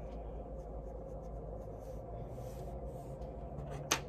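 A paintbrush stroking watercolor onto laser-cut birch plywood: soft, faint scratching over a steady room hum, then one sharp click near the end.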